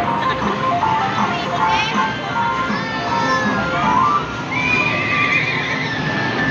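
Amusement arcade din: short electronic jingle notes from the game and kiddie-ride machines over steady crowd chatter, with a wavering high tone about four and a half seconds in.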